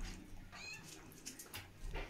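A Spitz puppy gives one short, faint, high-pitched squeak a little way in, followed by a few soft ticks.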